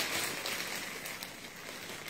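Rustling and crinkling of a clear plastic garment bag being handled, with a few faint clicks, fading away over the two seconds.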